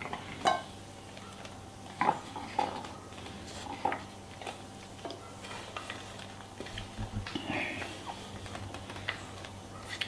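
Kitchen knife tapping and scraping on a wooden cutting board as carrots are cut and the slices pushed off into salad bowls: a few scattered light knocks and clicks, with a small cluster of them near the end.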